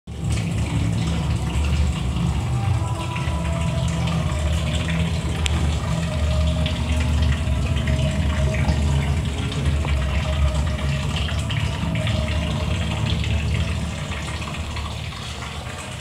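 Steady low rumble with a rushing hiss from running plant-room machinery among pipework, easing off over the last two seconds.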